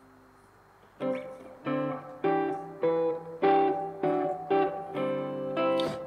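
Clean hollow-body electric guitar playing a sequence of picked chords, about two a second, each ringing briefly before the next. It comes in about a second in, after a near-silent start.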